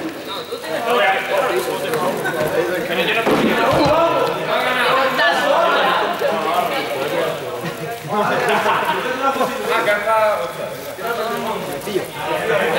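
Several people talking at once in an indoor sports hall, a mix of overlapping voices with no single clear speaker.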